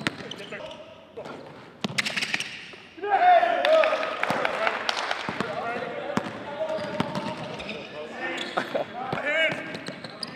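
Basketballs bouncing on a hardwood gym floor in a reverberant gym, with voices calling out over them.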